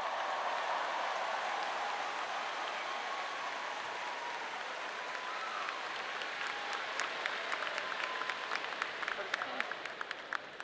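Large audience applauding, the steady clapping breaking up into scattered single claps near the end.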